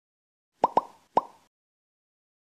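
Three short pops, each rising quickly in pitch: two in quick succession, then a third about half a second later. They are an editing sound effect for an animated title card.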